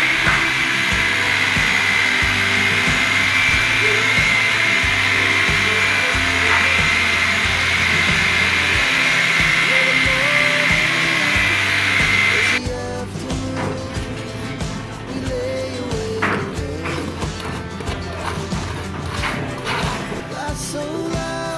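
Corded electric drill with a mixing paddle running steadily in a bucket, stirring mortar for lightweight blocks, with a high whine; it cuts off about twelve seconds in. Background music plays throughout.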